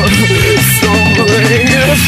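Loud recorded rock music with electric guitar over a steady drum beat.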